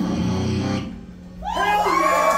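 A live rock band's last chord rings out on electric guitar and bass after the drums stop, and fades away within the first second. Halfway through, the audience breaks into cheering and whoops.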